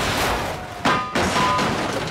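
Cartoon crash sound effects of a school bus smashing through a wall: a rush of crumbling debris, with a sharp thud a little under a second in and a second hit just after, followed by brief metallic ringing.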